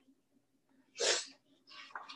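A short, sharp breath about a second in, then faint papery rustling near the end as a picture-book page is turned.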